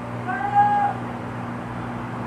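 A single high-pitched cry, about half a second long, rising then held, over a steady low hum.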